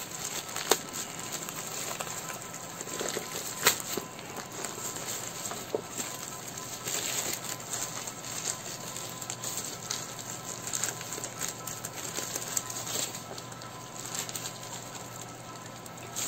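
Cardboard box and packaging being handled and worked open: scattered rustling and crinkling with small sharp clicks and knocks, two of them louder, about a second in and near four seconds in.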